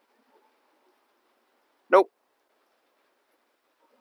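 Near silence, broken once about two seconds in by a single short spoken word, "Nope."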